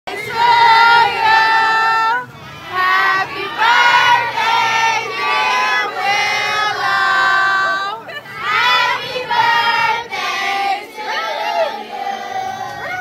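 Voices singing together in phrases of one to two seconds, with long held notes.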